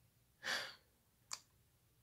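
A man's sigh: one short breath out about half a second in, followed by a brief click near the middle of the pause.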